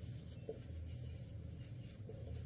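A marker pen writing on a whiteboard: a run of faint short strokes as letters are written. A steady low hum runs underneath.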